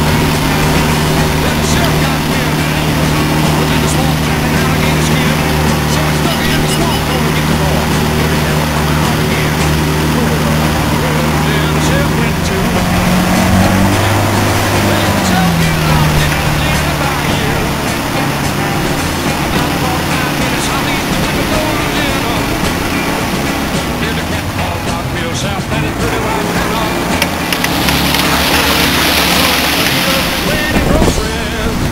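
A small boat's motor running steadily under way, with water and wind noise. About halfway through, its pitch rises as it speeds up and then drops back. A louder rushing hiss comes in near the end.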